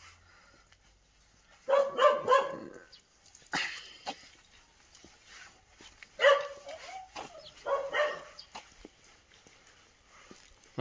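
Small dog barking at cats in short bursts: a quick run of barks about two seconds in, a single bark a second later, then more barks in the second half.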